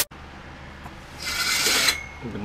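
A brief rasping rub, a little under a second long, starting just over a second in, over quiet room tone.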